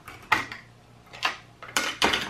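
The plastic snap-fit case of a Sonoff smart switch being pried open with a small flat-blade tool: a few sharp plastic clicks as the clips let go, the loudest near the end.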